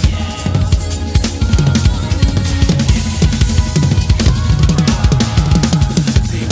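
Drum kit played fast in a gospel-chops style: rapid snare and tom strokes with bass drum and cymbals, over a band's sustained bass and keyboard notes.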